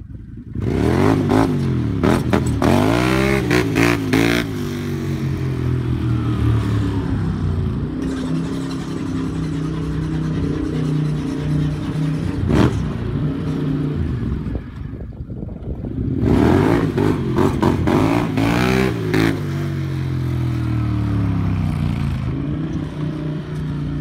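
Quad ATV engine revving and accelerating, its pitch climbing and dropping in two bursts of throttle, with steadier running between. A single sharp click near the middle.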